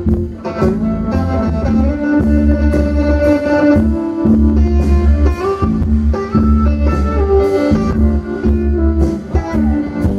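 Live band music with no singing: a Telecaster-style electric guitar plays over bass and drums.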